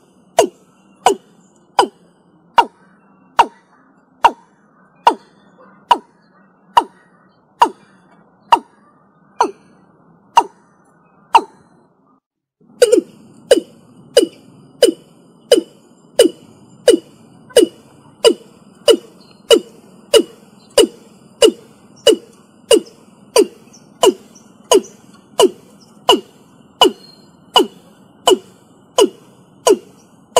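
Watercock (Gallicrex cinerea) calling: a long series of short notes, each dropping slightly in pitch, about one a second. After a brief break about twelve seconds in, the notes come faster, about two a second.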